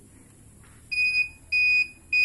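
High-pitched electronic beeps from a homemade ultrasonic obstacle-detector wristwatch for the blind, starting about a second in and repeating about every 0.6 s. This is the warning tone of the device in the mode it has just been switched to.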